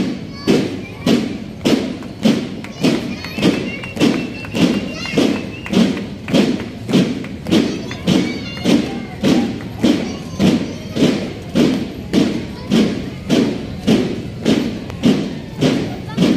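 Boots of a marching police column stamping in unison on cobblestones: a steady, even beat of heavy thuds, about two a second.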